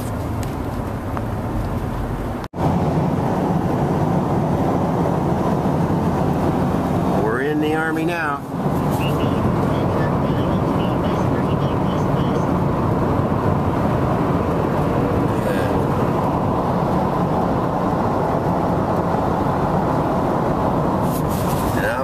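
Steady road and engine noise heard inside a cargo van's cabin at freeway speed. It cuts off abruptly about two and a half seconds in and comes back louder, with a brief wavering, voice-like sound around eight seconds in.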